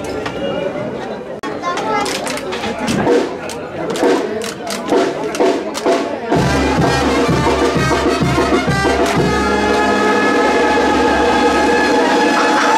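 Crowd chatter with sharp knocks, then about six seconds in a brass band with tuba strikes up. It plays held horn chords over a steady low beat.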